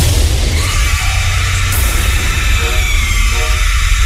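Dark horror-style jingle music: a deep rumble under a loud hissing wash, with a faint high whine falling slowly through the middle.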